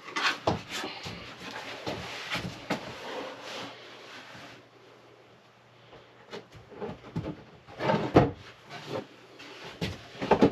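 Plywood drawer assembly handled and slid into a wooden cabinet opening: wood knocking, rubbing and scraping against the frame. The sounds come in two bunches with a short lull between, and the loudest knock falls about eight seconds in.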